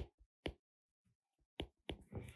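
Faint stylus clicks on a drawing tablet as a word is handwritten: four short, sharp taps, with a gap of about a second in the middle.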